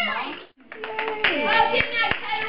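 Indistinct chatter of children and adults, cut off abruptly about half a second in, then resuming with a few scattered hand claps among the voices.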